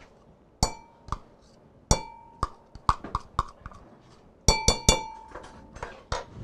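A metal spoon and measuring cup clinking against the rim of a ceramic mixing bowl as ricotta cheese is knocked loose into it. The strikes come as separate taps, each ringing briefly, with a quick run of three near the end.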